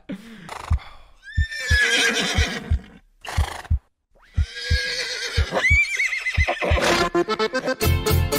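Horse whinnies, two long shaky falling calls, over evenly spaced low thuds about three a second. Accordion cumbia music starts near the end.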